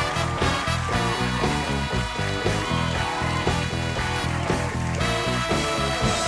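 Studio band playing upbeat bumper music with a steady beat and a moving bass line.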